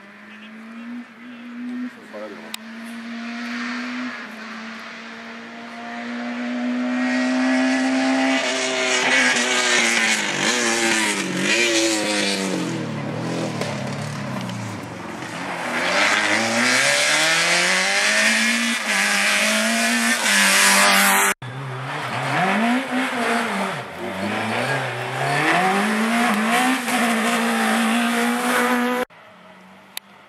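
Rally car engine at high revs, the pitch dropping and climbing again and again as the car lifts, brakes and downshifts through a bend, then accelerates hard away. The sound cuts off suddenly about two-thirds of the way through, resumes, and cuts off again near the end.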